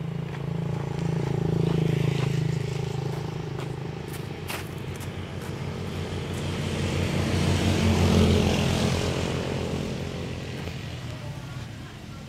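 Motor vehicles passing on the road: a motorbike engine rises and fades in the first few seconds, then a second, louder vehicle swells and passes about eight seconds in.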